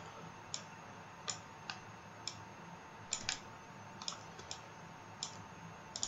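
Computer mouse clicking: about a dozen faint single clicks at irregular intervals, some in quick pairs.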